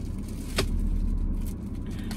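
Car engine idling, heard from inside the cabin as a steady low hum, with a single sharp click about half a second in.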